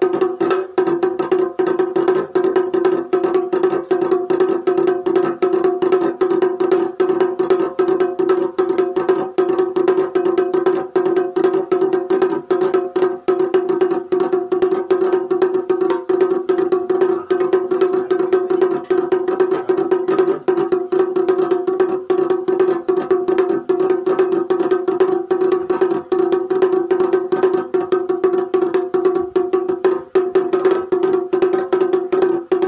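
Timki, a small folk kettle drum, beaten rapidly with two sticks in a fast, unbroken rhythm; each stroke carries the drum's steady ringing pitch.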